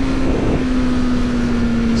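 BMW S1000R's 999 cc inline-four engine running at high revs, its note sinking slowly and steadily as the bike slows from motorway speed. Heavy wind rush is heard over it.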